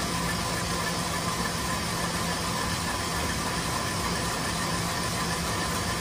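Electric stand mixer running at full speed with a steady motor hum, its whip beating warm whole eggs and sugar into a foam.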